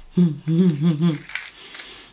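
A woman humming "mmm" with her mouth closed, the pitch wobbling up and down, in appreciation of the taste of salted caramel lip scrub she is eating. A soft breathy noise follows near the end.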